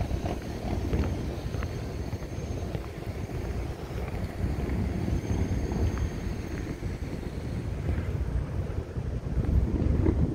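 Wind buffeting a phone's microphone in an uneven low rumble, with a few faint ticks.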